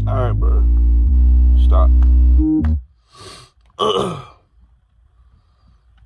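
Home-made hip-hop beat with heavy sustained bass and a man's freestyle rap voice over it, cutting off abruptly about halfway through. Two short breathy vocal sounds follow, then quiet.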